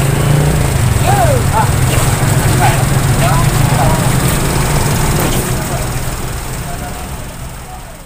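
A motor vehicle engine idling steadily close by, with scattered voices of people talking over it; the sound fades out near the end.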